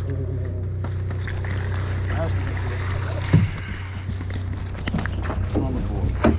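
A boat's engine running with a steady low hum, and one sharp knock a little past the middle.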